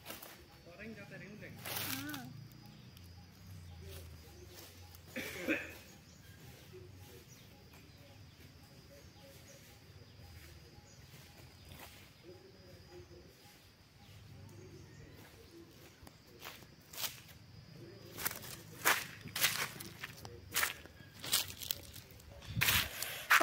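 Quiet outdoor background, then footsteps in flip-flops crunching over dry fallen leaves: a run of sharp crackles in the last few seconds, getting closer and louder.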